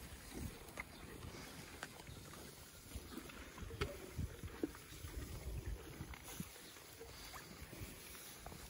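Ponies feeding on loose hay, with faint rustling, crunching and scattered small crackles as they pull at it and chew, over a low rumble on the microphone.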